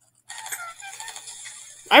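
Home-recorded cartoon sound effect of a juice box being sucked through its straw: an irregular, slightly crackly slurping noise that starts about a quarter second in. A voice begins right at the end.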